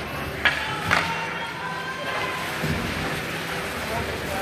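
Ice hockey game ambience in a rink: a steady murmur of spectators and players' voices, with two sharp knocks about half a second and a second in.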